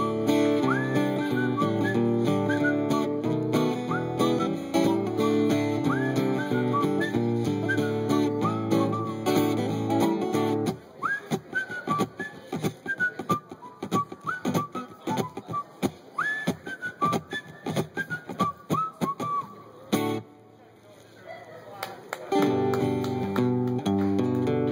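A man whistling a bright melody over strummed acoustic guitar chords; about eleven seconds in the guitar drops out and the whistling goes on alone, each note sliding up into pitch. The whistling stops about twenty seconds in, and after a short pause the guitar strumming comes back near the end.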